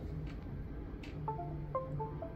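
Laptop's USB device-disconnect chime: a few short electronic tones falling in pitch in the second half, sounding as the USB-connected Rode Wireless Go II receiver drops off after its firmware update.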